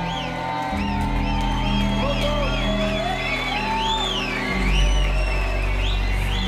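Progressive techno playing loud on a festival sound system, the bass coming in about a second in and hitting heavier near the end, with whoops and cheers from the crowd.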